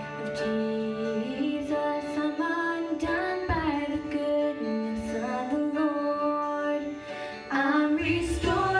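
A girl singing a gospel song with instrumental accompaniment. A second, louder voice joins shortly before the end.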